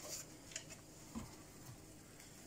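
A quiet kitchen with two faint, soft knocks, about half a second and just over a second in: small handling noises as bread dough is worked on the counter.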